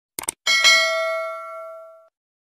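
A quick click, then a small bell dings, struck twice in quick succession, and rings out, fading over about a second and a half: the notification-bell sound effect of a subscribe-button animation.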